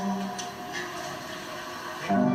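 Live acoustic guitar and voice: a held sung note stops shortly after the start, and the guitar's chord is left ringing and fading quietly, with a couple of faint clicks.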